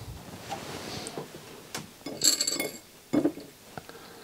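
Handling noise from a CD player's drive and loader assembly: a few light clicks and knocks, with a brief metallic jingle about two seconds in as its coil springs are handled.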